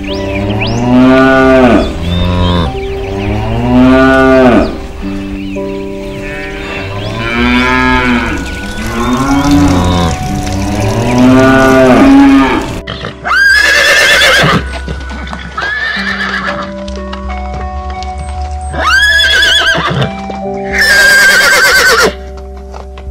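Cows mooing, about five long moos a few seconds apart, each rising and falling in pitch. From about 13 s a horse whinnies four times in high, wavering calls, over soft background music.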